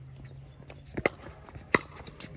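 Two sharp knocks of a pickleball, one about a second in and a louder one near the end, with footsteps on the hard court.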